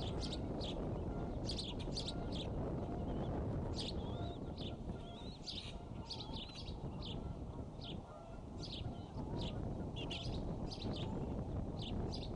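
Short, high bird chirps, often in pairs, repeating one or two times a second over a steady low background noise.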